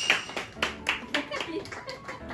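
Hands clapping in an uneven patter, with voices faint in the background.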